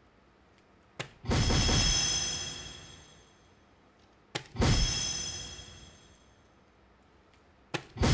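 Darts hitting a DARTSLIVE soft-tip electronic dartboard three times. Each sharp tap is followed a moment later by the machine's loud electronic hit sound, which rings and fades over about two seconds; the first of these marks a triple 20. The third tap comes near the end.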